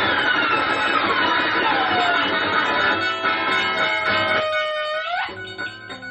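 Free-improvised music from electric guitars with electronics: sliding, falling pitches that settle into one long held tone, which bends sharply upward and cuts off about five seconds in, followed by quieter, choppy stuttering notes.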